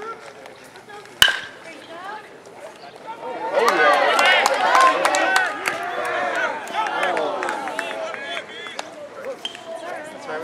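A metal baseball bat strikes a pitched ball with a sharp, ringing ping about a second in, the loudest sound. About two seconds later many voices break out shouting and cheering, thinning out over the next few seconds.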